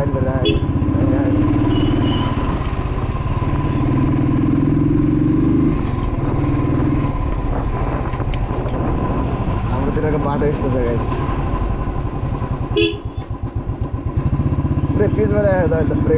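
Motorcycle engine running steadily under the rider while riding. Near the end a sharp click comes, and the engine goes quieter and uneven for a second or two before picking up again.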